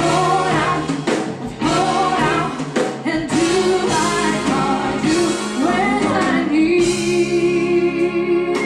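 Female vocalist singing live with big band accompaniment: a run of ornamented, wavering phrases, then a long held note with vibrato near the end.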